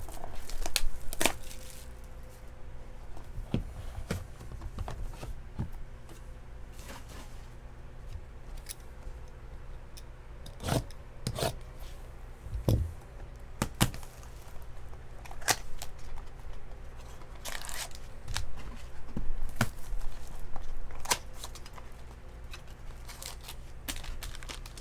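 Sealed trading-card box packaging being opened and handled: scattered tearing and crinkling of wrapper and cardboard, with sharp taps and knocks as the box and foil packs are set down on the table, most of them around the middle.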